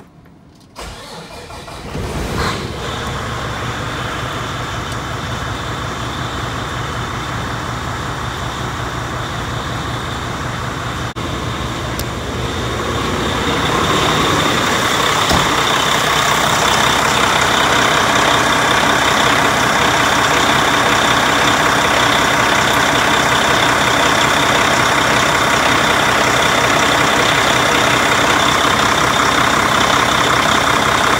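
Peterbilt semi truck's diesel engine being cranked, catching about two seconds in and settling into a steady idle. It is started so the A/C system can run while the refrigerant charge is finished. About 13 seconds in the sound grows louder and hissier and stays that way.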